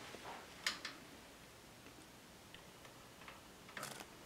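Quiet room with a few faint, scattered clicks and ticks of wire handling as a chicken wire cage is set down around the meters. The two clearest clicks come just before and just after a second in, with lighter ticks later and near the end.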